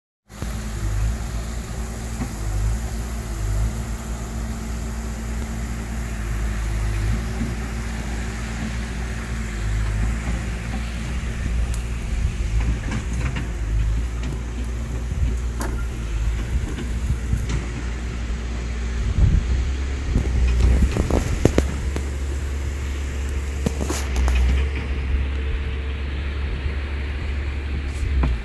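A vehicle engine idling steadily, heard from inside the van's cabin, with a low hum that grows heavier about two-thirds of the way through. There are a few light clicks and knocks of things being handled.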